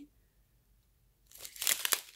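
A small plastic zip bag of crystal diamond-painting drills crinkling as it is handled and turned over, starting about a second and a half in after a quiet moment.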